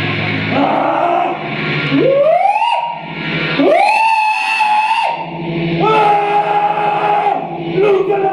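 Live experimental music: over a low steady drone, three long pitched notes, each sliding up sharply and then holding for about a second, like a wailing voice or synthesizer.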